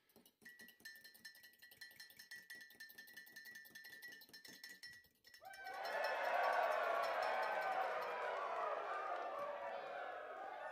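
A short music sting with rapid even ticking over a steady high tone. About five and a half seconds in, a crowd-cheering sound effect takes over.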